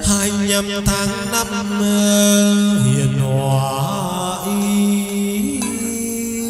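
Chầu văn (hát văn) ritual music: a voice chanting long, held, wavering notes over sustained accompaniment, with two sharp percussion clicks in the first second.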